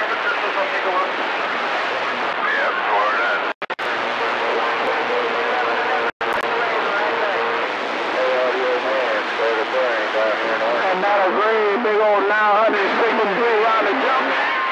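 CB radio receiver audio: a steady hiss of band static with faint, garbled distant voices talking over one another. A low steady whistle comes in for a couple of seconds about four seconds in, and the audio drops out briefly twice.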